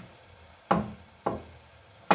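Wooden cooking stick pounding mashed potato mukimo in a stainless steel pot. Two sharp knocks come about half a second apart, a little under a second in, each with a short ringing tail.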